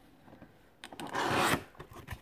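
Cardboard Funko Pop box being opened by hand: a few light clicks, then about a second in a loud scraping rub of cardboard and the plastic tray inside, lasting about half a second, with more small clicks near the end.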